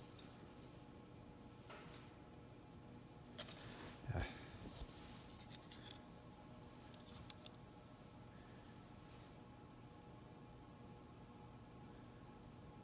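Mostly near silence, broken by a few faint metallic clicks and a soft knock about four seconds in, from a telescoping snap gauge being handled and measured across steel dial calipers.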